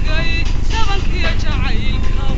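Somali song: a voice singing, its pitch sliding and bending, over a steady instrumental backing.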